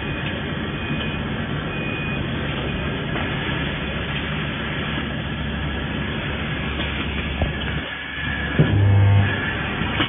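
Steady mechanical noise of a running nut welding machine and its automatic nut feeder on a factory floor. Near the end the noise dips briefly, then a loud low hum sounds for about half a second.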